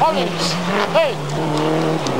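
Rally car engine running at high revs, holding a steady note.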